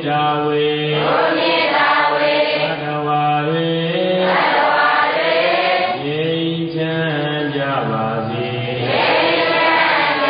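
Chanting: a low voice holding long, drawn-out notes that step up and down in pitch, one note running into the next with only brief breaks.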